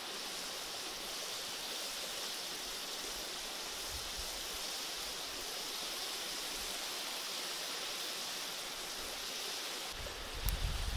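Catfish stir-fry with lemongrass and chilies sizzling steadily in a wok, an even hiss with no stirring strokes.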